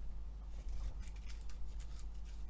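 Faint handling noises from a spool of black bead thread: scattered light clicks and rustles as thread is drawn off and handled, over a steady low hum.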